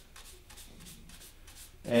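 Paintbrush scrubbing oil paint on a wooden palette: faint, quick bristly strokes, several a second.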